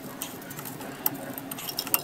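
Light metal clicks and clinks of drum brake hardware, the springs and hold-down parts against the shoes and steel backing plate, as they are fitted by hand. There are a few scattered clicks, and the sharpest one comes near the end.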